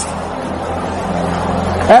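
A congregation praying aloud all at once: a steady, even murmur of many voices with no single voice standing out, over a faint low steady hum.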